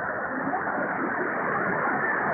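Weak long-distance AM broadcast signal on 1700 kHz through a communications receiver: steady, muffled static and hiss with faint, unintelligible programme audio buried underneath.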